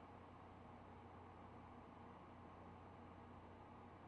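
Near silence: faint microphone hiss and room tone.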